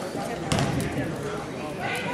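A basketball bouncing once on the hardwood court about half a second in, the thud ringing in the gym, over the steady chatter of voices in the hall.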